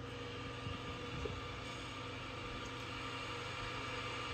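Steady low hiss with a faint constant hum and an occasional faint tick. There is no distinct event or music.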